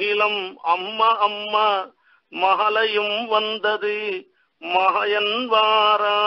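A man chanting verses in a steady, sung recitation, in phrases broken by short breaths. Near the end he settles on one long held note.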